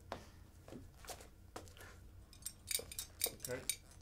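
Light glass clinking: a quick run of about a dozen small, high, sharp clinks over a second and a half, starting a little past halfway.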